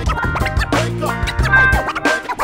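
Vinyl record scratched on a DJ turntable over a live band's hip-hop groove, with a deep bass line and regular drum hits.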